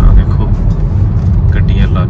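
Steady low road and engine rumble inside the cabin of a moving car, with people talking over it near the end.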